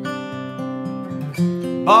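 Taylor acoustic guitar, capoed, picked and strummed as a country-song accompaniment, with a chord change about one and a half seconds in. A voice begins singing right at the end.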